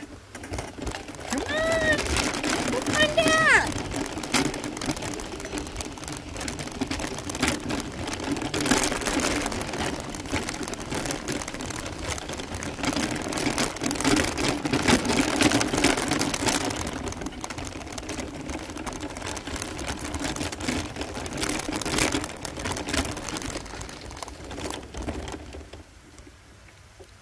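Wheels rolling over a gravel road: steady crunching and rattling of loose gravel with a constant low hum, fading away just before the end. A few short high rising-and-falling calls sound about two seconds in.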